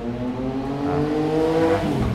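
A motor vehicle accelerating, its engine note rising steadily for almost two seconds and then dropping away near the end.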